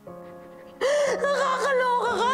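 A woman bursts into loud sobbing about a second in, her crying wavering up and down in pitch, over soft background music with long held notes.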